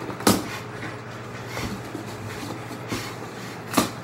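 Handling noise as things are moved about below a counter: two sharp knocks, one just after the start and one near the end, with faint rustling between, over a steady low hum.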